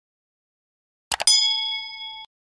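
Two quick click sound effects about a second in, then a single bell ding that rings on, fading slowly, and cuts off suddenly: the stock sound of a subscribe button being clicked and its notification bell ringing.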